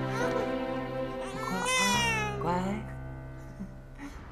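Newborn baby crying over soft background music, with one long wail rising and falling about halfway through; the sound thins out near the end.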